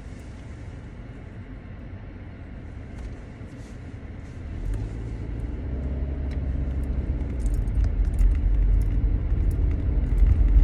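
Road and engine noise heard inside a moving car's cabin: a low rumble that grows louder from about halfway through, with a few faint light clicks or rattles near the end.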